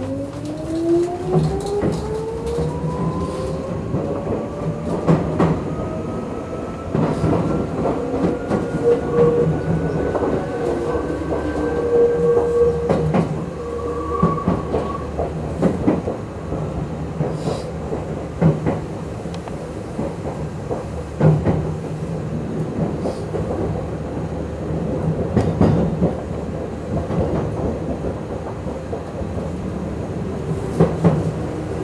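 Tokyu 8500 series electric commuter train pulling away and accelerating, heard from the leading car. Its motor whine rises in pitch over the first twelve seconds or so, then holds steady as the train runs on, with wheel rumble and irregular clicks over the rail joints throughout.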